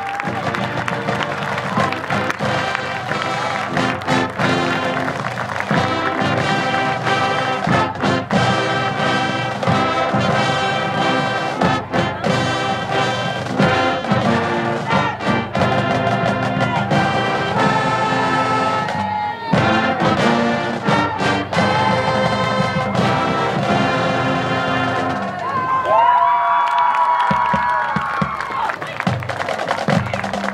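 High school marching band playing a tune, brass over drums in a steady rhythm, with a brief break about two-thirds of the way through and a few held brass notes near the end.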